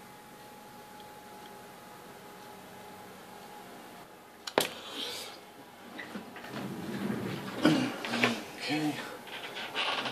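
Quiet room tone with a faint steady hum, broken about halfway through by a single sharp click. After that comes low, wordless muttering that grows louder toward the end.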